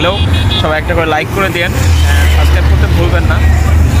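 Road traffic beside a man talking. In the second half a motorcycle's engine comes close, and its low rumble becomes the loudest sound.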